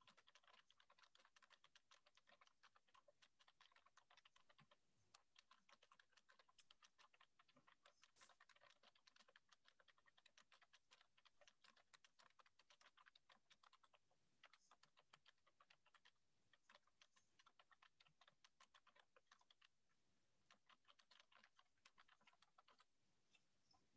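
Near silence, with faint, rapid, irregular clicking that pauses briefly now and then.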